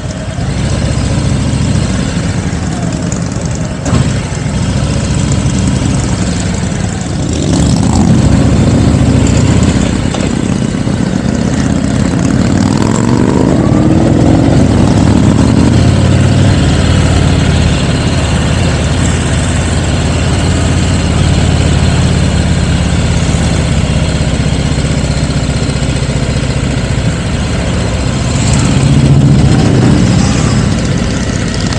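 Motorcycle engines running on the move, heard from a camera mounted on the riding vehicle with wind noise; the engine sound gets louder a few seconds in, and an engine speeds up with a rising pitch around the middle.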